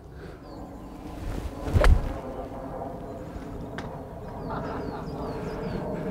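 A single sharp knock with a low thump about two seconds in and a fainter tick near four seconds, over a low steady outdoor background with faint bird chirps in the second half.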